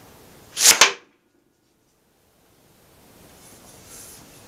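A sharp, forceful puff of breath blown through a five-foot half-inch metal conduit blowgun, firing a dart, with its hit on the plywood target a split second later.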